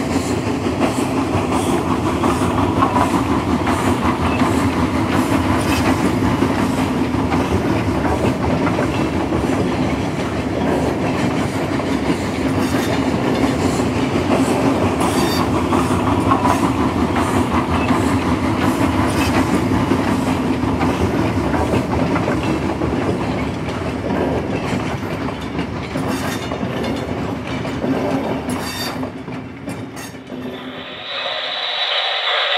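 O-gauge model train running on three-rail track: a steady rumble of metal wheels rolling, with clicks as they cross the rail joints.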